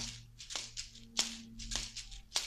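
Asalato (kashaka) being played: two seed-filled gourds on a cord shaken in a steady rhythm, rattling shakes about every half second with sharp clicks where the gourds knock together, in the three-beat flip-flop trick.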